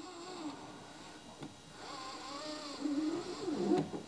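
A man humming quietly, a low wavering "hmm" while he hesitates, with a faint hiss near the middle.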